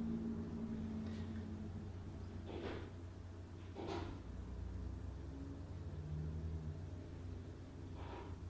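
Quiet room with a steady low hum, and two soft breaths, about two and a half and four seconds in.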